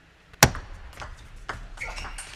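Table tennis ball hit by rubber-faced paddles and bouncing on the table. A sharp, loud click about half a second in opens the point with the serve, then lighter clicks of the rally follow about every half second.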